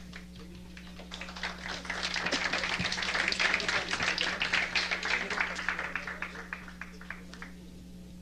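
Studio audience applauding: dense clapping that builds from about a second in, peaks mid-way and dies away near the end, over a steady low electrical hum.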